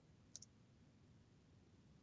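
Near silence: room tone, with one faint, short click about a third of a second in.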